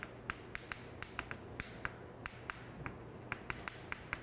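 Chalk writing on a blackboard: a quick, irregular run of sharp chalk clicks and taps against the board, several a second, as the characters are written in short strokes.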